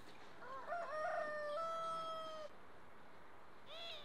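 A rooster crowing once: a few short rising notes that run into a long held note, about two seconds in all. A short single call follows near the end.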